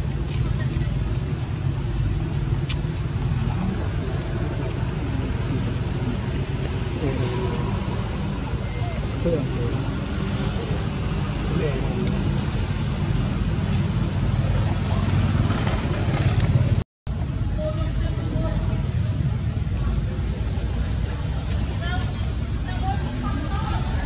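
Outdoor background of a steady low traffic rumble with faint, indistinct voices. The sound cuts out for a split second about two-thirds of the way through.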